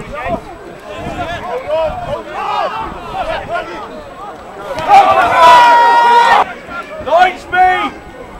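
Players and spectators shouting during open rugby play on the pitch. About five seconds in comes a loud, steady high tone that lasts about a second and a half.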